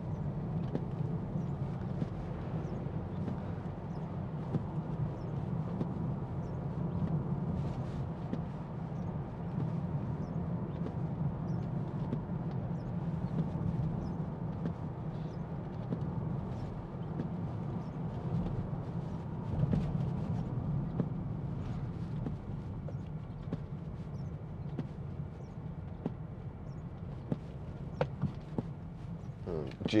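Interior cabin noise of a 2018 BMW X5 xDrive30d on the move on a wet road: a steady low drone from the six-cylinder diesel and the tyres, with scattered light ticks over it.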